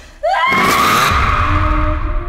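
A sudden scream that rises in pitch, layered with a loud trailer sound-effect hit: a harsh noisy burst, then a deep low boom that carries on.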